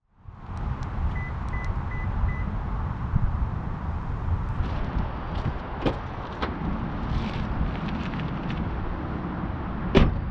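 Steady outdoor wind rumble on the microphone beside a Lexus GX460, with four faint short beeps in the first few seconds. The driver's door handle and latch click open about six seconds in, and the door shuts with a sharp thump at the very end.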